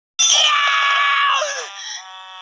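A cartoon character's loud scream that starts suddenly, holds for about a second, then falls in pitch and fades.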